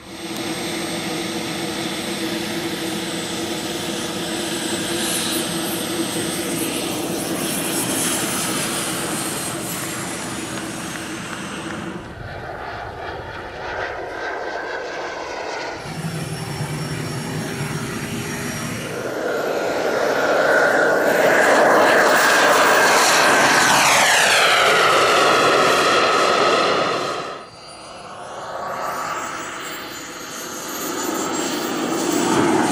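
Turbine engines of large radio-controlled scale model jets, in several edited segments: a steady high whine with a rushing noise from a jet in flight, then a louder pass whose whine drops steeply in pitch before cutting off abruptly.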